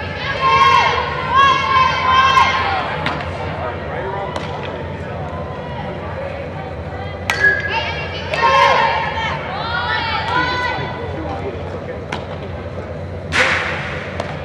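Players shouting calls across a large echoing indoor hall during softball infield practice, broken by sharp smacks of softballs being hit and caught, the loudest one near the end.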